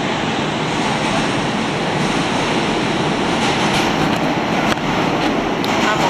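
Steady, loud noise from inside a moving New York City subway train car on the F line: wheels and rails running under the car.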